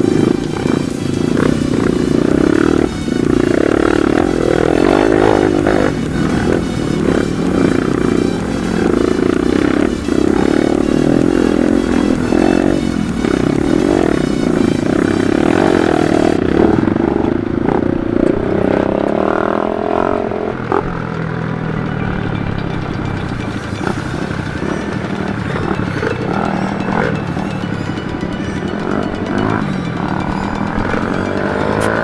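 Dirt bike engine running under load on a rough rocky trail, heard from the rider's own bike, mixed with background music.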